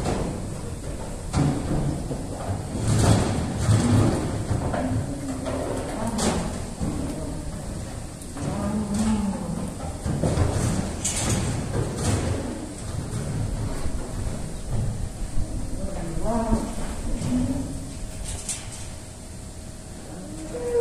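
Calves mooing several times, with a few sharp knocks scattered among the calls.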